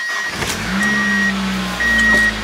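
A Mazda Miata's four-cylinder engine cranks briefly on the starter, catches, and settles into a steady idle that rises a little near the end. A warning chime in the car beeps about once a second alongside.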